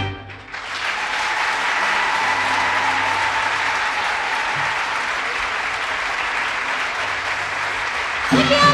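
A large seated audience applauding. The clapping swells within the first second, right after the music stops, and then holds as a steady round of applause.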